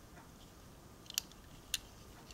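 Faint handling of a small diecast model car turned in the fingers, with two small sharp clicks, one just after a second in and one near the end.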